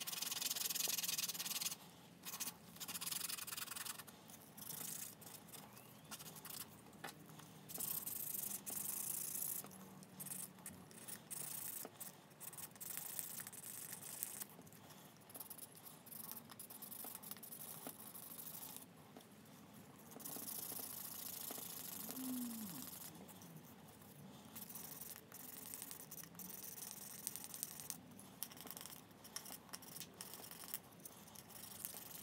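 Dampened leather edge being burnished with a wooden slicking stick: quick back-and-forth rubbing in bursts with short pauses between strokes, matting the edge fibres down to a slick, shiny finish.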